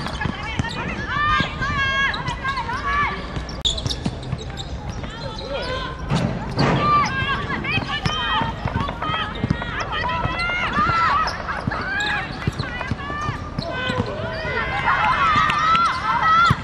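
Women footballers shouting and calling to one another across the pitch, with a few dull thuds of the ball being kicked.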